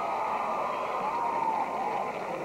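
Theatre audience applauding steadily, with scattered cheers and calls.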